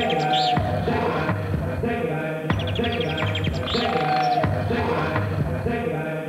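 Opening theme music of a TV animal programme: a short musical phrase that repeats, with high chirping glides over it.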